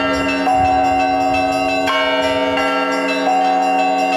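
Russian Orthodox church bells ringing a perezvon: several bells of different sizes struck by a ringer, their tones overlapping and ringing on, with a fresh stroke about every second and a half. The ringing announces Easter, the Resurrection.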